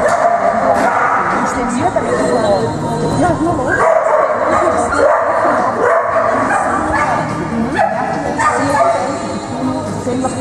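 Dogs barking, over a steady background of voices and music.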